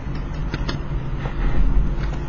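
Steady low background hum with a few faint ticks about half a second in.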